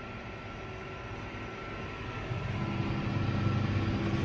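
Tractor engine running inside the cab while pulling a seed drill across the field; about two seconds in its hum grows louder and deeper as the engine takes more load.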